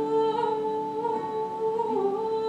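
A woman singing a Renaissance song in long held notes with a slight vibrato, accompanied by lute and viola da gamba.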